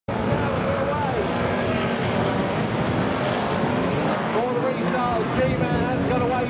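Engines of a pack of banger-racing saloon cars running hard together, their notes rising and falling as the drivers rev and lift.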